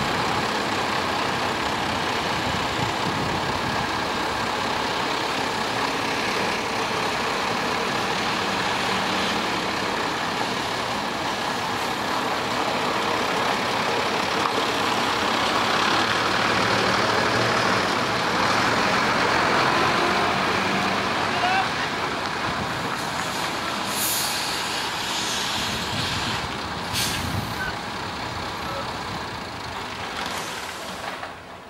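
Articulated lorry's diesel engine running as the low-loader pulls round and drives forward, swelling a little in the middle. Two short air-brake hisses near the end.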